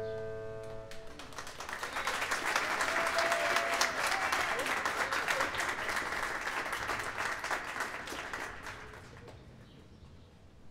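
A grand piano's final chord rings and dies away, then an audience applauds, the clapping swelling for a few seconds and fading out near the end.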